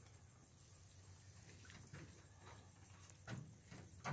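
Near silence: faint outdoor room tone with a few soft, brief knocks or rustles, one a little louder near the end.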